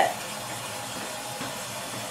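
A steady, even hiss with no clicks or tones.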